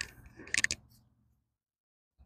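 A roll of black duct tape being handled, its end picked loose: a few short clicks and crackles in the first second, then nothing from about a second in.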